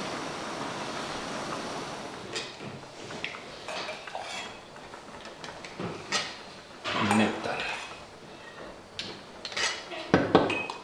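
A metal ladle clinking against an aluminium stockpot and a ceramic mug as broth is ladled out of a seafood boil, in a scatter of separate clinks and knocks. A steady hiss fills the first two seconds.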